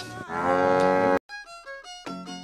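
A cow moos once, a long call that cuts off abruptly just past a second in. Background music with fiddle-like notes follows.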